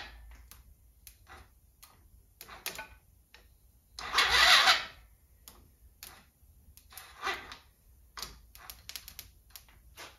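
Scattered light clicks and rattles of hands and a tool working at a small ATV engine, with one short, loud hissing burst about four seconds in and a fainter one near seven seconds.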